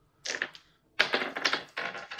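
A six-sided die rolled on a tabletop: a short rattle, then a quick run of clattering clicks about a second in as it tumbles and settles.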